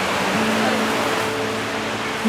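Steady rustling and crunching of hands turning over a tub of damp, fermenting indigo leaves, which are being mixed with water so that they ferment and heat up.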